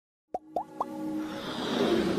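Motion-graphics logo intro sound effect: three quick pops, each gliding upward in pitch, then a whoosh that swells louder.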